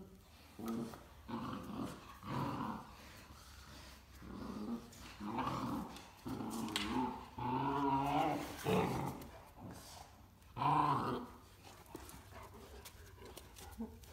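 Great Danes growling in play while tugging at a plush toy: a string of short growls in bursts, with the longest run about seven to nine seconds in.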